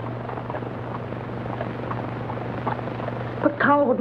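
A steady low hum over hiss, the background noise of an old film soundtrack between lines; a woman starts speaking near the end.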